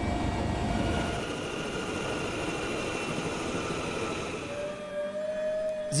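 Helicopter turbine running with a steady whine over an even rushing noise; the deep rumble underneath falls away after about a second.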